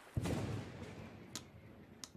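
A sudden low thud with a rumble that fades over about a second, then a single sharp click about a second later.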